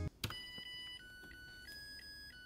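Electronic rice cooker playing its start-up melody: a short tune of steady beep notes that step to a new pitch about every 0.7 s, after a click of the panel button, signalling that the cook cycle has begun.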